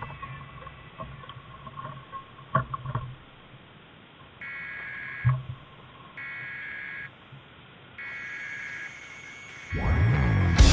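Three electronic beeping bursts, each just under a second long and evenly spaced, typical of a pedestrian crossing signal at traffic lights, over faint street noise. A few sharp knocks sound in the first half.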